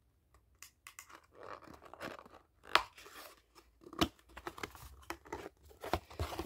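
A cardboard toy box being worked open by hand: scattered crinkling and scraping of the box and packaging, with a few sharp clicks.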